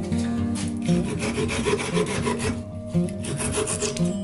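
Japanese pull saw cutting through wood in repeated rasping strokes, heard over acoustic guitar music.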